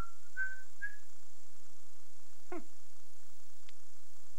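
A person whistles three short notes in the first second, each a little higher than the last, followed by a single brief sound about two and a half seconds in.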